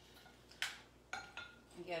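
Handheld citrus press being worked to squeeze a lemon half, giving two short clicks about half a second apart and a fainter one after.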